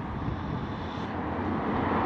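A steady engine drone, swelling slowly louder towards the end.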